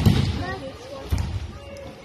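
Judokas' bodies slapping and thudding onto tatami mats in breakfalls: a heavy thud at the start and a second, lighter one about a second later.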